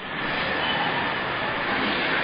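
A steady rushing noise with no pitch, building up over the first half second and then holding level.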